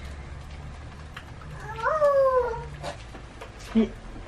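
An 8-month-old baby cries out once, a single wail about two seconds in that rises and then falls in pitch over about a second. The baby has just woken up shouting, which her mother takes for a bad dream.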